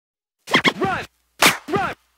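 DJ turntable scratching: about five short back-and-forth strokes in two quick groups, each one sweeping up and down in pitch.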